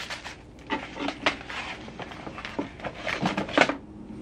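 Wig packaging being handled and turned over: irregular rustling and crinkling with small clicks, a little louder near the end.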